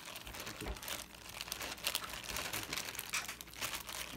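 Plastic freezer bag crinkling in a dense run of short crackles as a hand mixes lamb pieces and marinade inside it.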